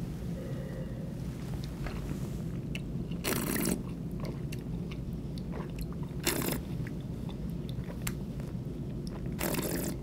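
Red wine being sipped and worked around the mouth, with small wet mouth clicks and three short breathy rushes of air about three, six and nine and a half seconds in.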